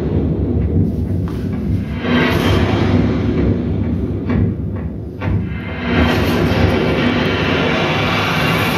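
Film trailer soundtrack playing back from a TV: a dramatic score with deep booms and low rumble. It swells up again about two seconds in and once more near six seconds.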